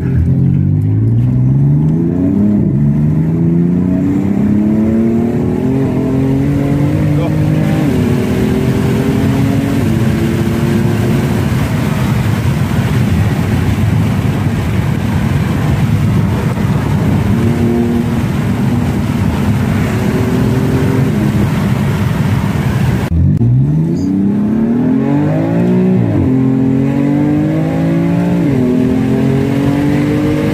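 Car engine heard from inside the cabin, pulling up through the gears: its pitch climbs, drops back at each shift and holds steady while cruising. About 23 seconds in it dips briefly, then revs up hard again through two more gears.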